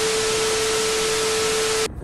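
TV static transition sound effect: a steady hiss of white noise with one steady tone under it, cutting off suddenly just before the end.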